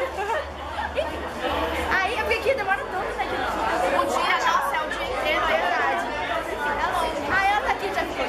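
Only speech: several voices talking over one another, with crowd chatter behind them.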